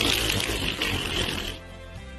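Toilet water rushing and draining as a Pushover Plunge plunger forces the clog down. The rush fades away about a second and a half in.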